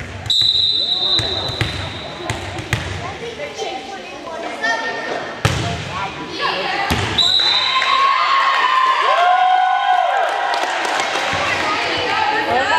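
A referee's whistle blows twice, a steady shrill blast of about a second at the start and a shorter one about seven seconds in. In between, the volleyball is struck with a couple of sharp smacks. Players' calls and spectators' voices run throughout.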